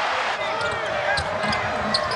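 Arena crowd noise from a basketball game, with a ball bouncing on the hardwood and sneakers squeaking as players run.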